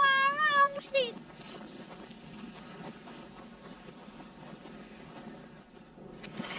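A child's high-pitched shouting played backwards: a few short cries that glide up and down in pitch during the first second. After that only a faint steady hiss of outdoor ambience remains.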